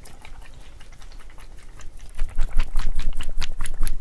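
Plastic water bottle handled right at a microphone: light crackles at first, then loud, dense plastic crinkling from about two seconds in.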